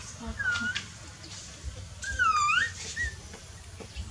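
Newborn puppy whimpering while nursing: a short high squeal about half a second in, then a louder, longer cry about two seconds in that dips in pitch and rises again, followed by a brief chirp.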